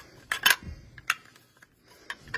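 Sharp clicks and clacks from handling the metal interior unit of a smart deadbolt lock: a pair about half a second in and one more about a second in.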